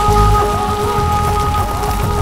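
Thriller film score: a held high chord over a pulsing low bass, with a dense hissing, rain-like noise layered over it.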